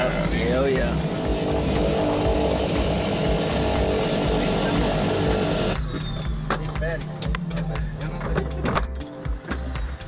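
Steady cabin noise of a small propeller airplane, with a man laughing at the start. About six seconds in it cuts off abruptly and background music with a beat takes over.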